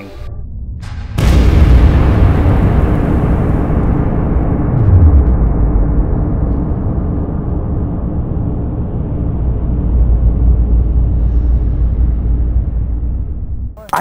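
A slowed-down black-powder pistol shot: a heavy boom starting abruptly about a second in, then a long deep rumble that slowly fades over about twelve seconds, with a low pitch sliding downward around five seconds in, mixed with a low musical drone.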